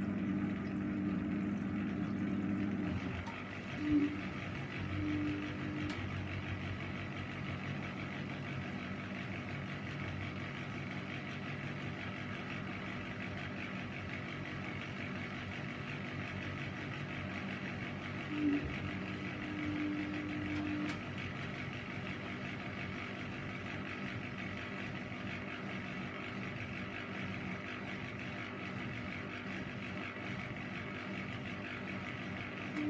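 Bendix 7148 front-loading washing machine running with a steady whirring noise. A low hum is heard for the first few seconds and comes back briefly about four seconds in and again from about eighteen to twenty-one seconds in.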